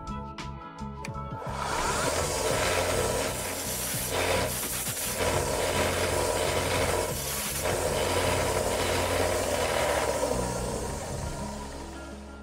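Small belt sander grinding down the protruding end of a brass rivet set in a Kydex sheath. The grinding starts about a second and a half in, eases off twice as the piece is briefly lifted from the belt, and fades out near the end.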